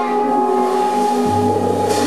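Free-jazz quartet improvising: soprano saxophone, electric guitar, upright bass and drums playing long, held notes together, with a low note coming in a little past the middle.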